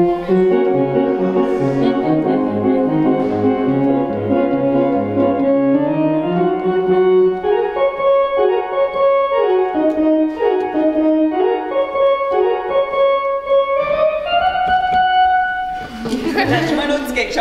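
Two-manual church organ played slowly: held chords over a stepping bass line, then a simple melody over changing chords, ending on one long held chord.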